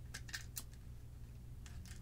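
Faint clicks and ticks of a small tripod's ball joint and the recorder mounted on it being turned and handled by hand: a few in quick succession, then two more near the end, over a low room hum.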